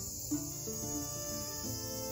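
Cicadas droning in a steady, high, even hiss, with background music of held melodic notes playing over it.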